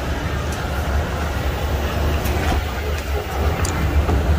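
Escalator running, a steady low mechanical hum and rumble with a few faint ticks.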